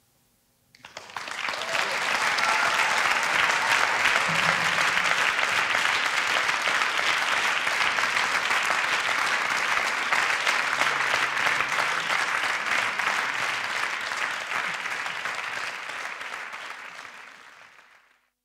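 Audience applauding at the close of a live concert performance. The applause starts about a second in, holds steadily and fades away near the end.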